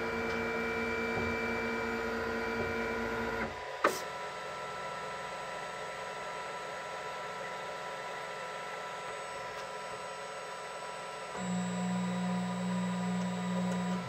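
Flashforge Guider 2 3D printer's stepper motors moving the build plate and print head during a nozzle-height calibration run, a steady motor whine. The whine stops with a sharp click about four seconds in and gives way to a quieter hum. A lower-pitched motor tone starts near the end.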